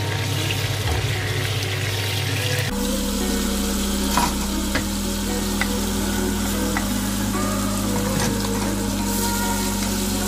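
Button mushrooms and sliced sausage frying in hot oil in a non-stick wok, a steady sizzle, with a few light taps of the stirring utensil on the pan. Background music plays underneath.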